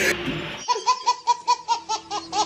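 A baby laughing hard: a quick run of high-pitched laugh bursts, about five a second, starting just over half a second in.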